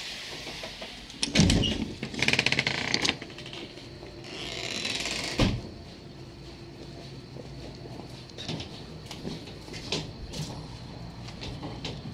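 A door being opened and shut as someone walks through: a thump, a quick rattle, a hiss, and a second thump, followed by scattered light footsteps and knocks.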